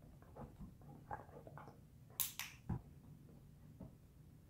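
A dog nosing and pawing around small metal tins on a rubber mat: faint soft taps and scuffs, two short sharp bursts a little over two seconds in, then a dull thump.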